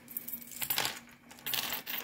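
A Trifari necklace of blue resin and gold-tone beads rattling as it is handled on a wooden tabletop. The beads clink against each other in several short bursts of light clicks.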